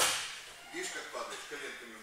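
A thrown trainee landing on a padded training mat: one sharp slap at the very start, fading over about half a second. Faint voices follow.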